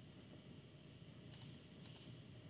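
Near silence: faint room tone with a few small, faint clicks about a second and a half in.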